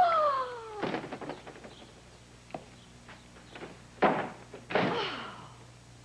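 A woman's voice slides down in a drawn-out, playful tone, then stops. Scattered light knocks follow, with a sharper thunk about four seconds in, of the kind a door makes when it is pushed open or shut, and then a brief sound falling in pitch.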